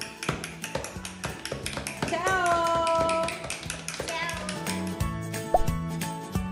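Children tapping homemade toy instruments, among them a can drum, in quick uneven taps over music. A voice holds one note for about a second, a couple of seconds in.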